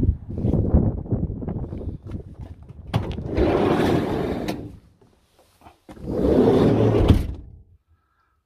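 Footsteps on a pavement with handling knocks, then a van's sliding side door rolling with a noisy rumble for about a second and a half, and after a brief gap a second similar sliding rumble.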